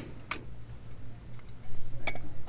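A few light clicks and taps of plastic and metal as a pneumatic coil roofing nailer is handled on its display hook, over a steady low hum.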